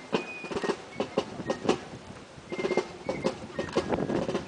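Squad rifle drill: hands slapping and clacking against rifles and boots stamping on pavement, a rapid, uneven run of sharp clacks and knocks with a brief lull about halfway.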